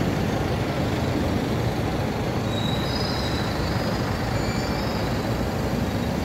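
Steady street traffic noise of city buses driving past close by, with a faint high squeal about halfway through.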